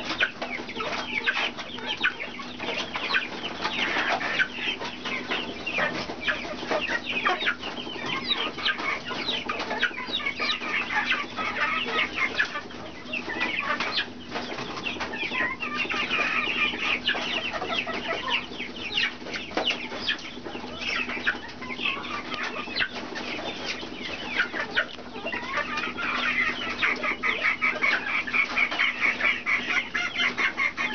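Senegal parrot biting and chewing a green pod: a long run of small crunches and beak clicks, quicker and denser near the end.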